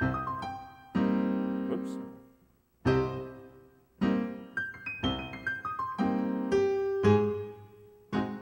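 Piano played slowly in stride style, practising a difficult passage: a short falling run of single notes, a full chord left to ring about a second in, another chord near three seconds, then a longer falling run from about four seconds that ends on held chords.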